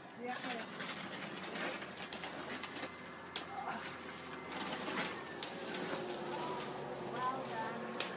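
Leaves and branches rustling, with a few sharp cracks of snapping wood, as a tree is pulled down through tangled vines.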